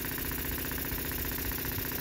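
Stuart S50 model steam engine running fast with a rapid, even beat, its exhaust driving a small brass turbine.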